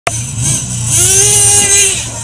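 Traxxas T-Maxx RC monster truck's small nitro engine running. It revs up about a second in and holds a high-pitched buzz, easing off slightly near the end.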